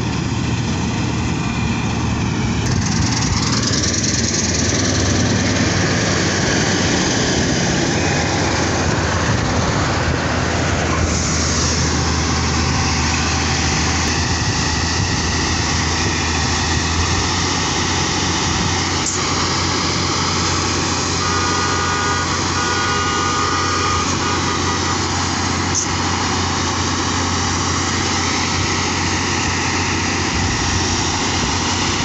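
Combine harvester running steadily and loudly, its engine and threshing machinery giving a continuous drone with a couple of shifts in pitch in the first half. Later the close machine is a New Holland combine whose unloading auger is pouring threshed wheat out onto a tarp.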